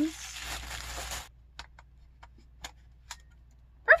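A rustle of plastic wrapping for about a second, then a handful of light, sharp clicks as a lens is fitted onto a Canon EOS M50 mirrorless camera body and its EF-M bayonet mount is twisted into place.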